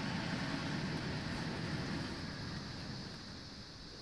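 HO scale coal hopper train rolling along model track: a steady low rumble of wheels on rail that grows quieter near the end.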